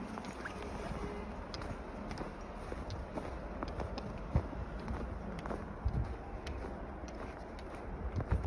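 Footsteps crunching in snow, with a few sharper crunches, over a steady low rumble of wind on the microphone.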